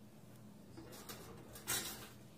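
Crusty artisan bread slices being handled and slipped into the long slot of a stainless-steel toaster: quiet rustles about a second in, then a short, louder scraping rustle near the end.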